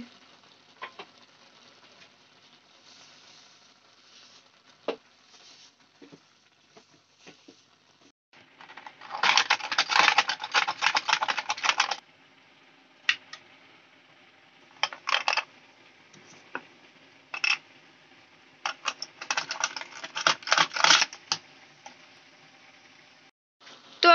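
Handheld plastic dry-fruit cutter chopping cashews and almonds: a dense run of rapid clicking and rattling lasting about three seconds, then several shorter bursts of clicks. A few faint knocks come before it.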